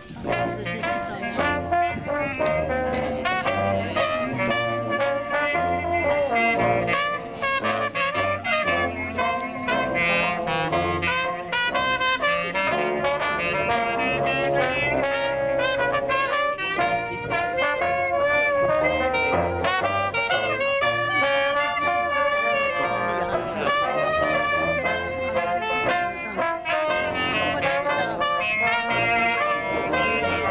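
Traditional jazz band playing an instrumental passage: trumpet, trombone and clarinet over tuba and banjo, the tuba's bass notes keeping a steady beat.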